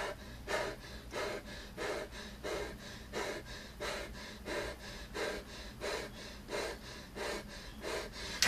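A man panting hard, out of breath from an all-out Tabata rowing workout. His breaths are quick and even, about three every two seconds.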